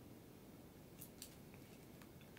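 Faint crinkly ticks from a small plastic sauce packet being handled over food, two short ones about a second in and a fainter one soon after, over near-silent room tone.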